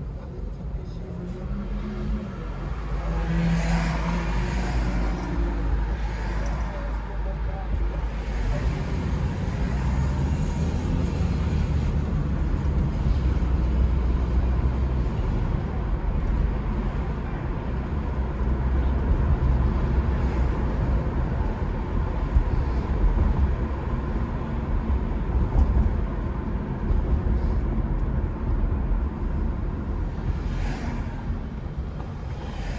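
Steady low road and engine rumble of a car driving along city streets, with tyre hiss swelling as traffic passes.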